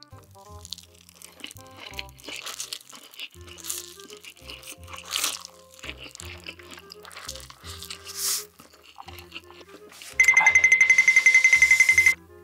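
A person slurping and chewing spicy instant noodles, with loud slurps about five and eight seconds in, over soft background music. Near the end a loud buzzing tone with a fast flutter cuts in for about two seconds.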